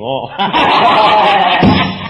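A loud burst of laughter from several people at once, starting about half a second in and dying away near the end: laughter at a joke in a recorded comedy sketch.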